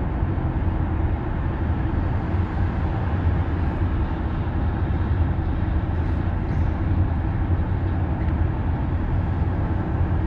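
Steady road and tyre noise heard inside the cabin of a Tesla electric car cruising at highway speed, a constant low rumble with a hiss of air over it.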